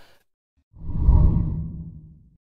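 A deep whoosh sound effect that comes in about three-quarters of a second in, swells quickly and fades away over about a second and a half.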